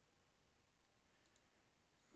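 Near silence, with a few very faint clicks in the middle.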